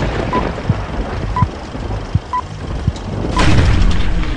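Film-leader countdown sound effect: a short high beep about once a second, four in all, over steady hiss with scattered low pops like old film crackle. The noise swells near the end.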